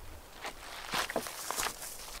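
Footsteps on a rocky dirt trail: a few uneven, crunching steps moving away.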